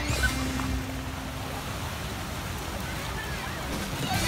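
Music fading out about a second in, followed by a steady, even wash of small waves breaking on the shore.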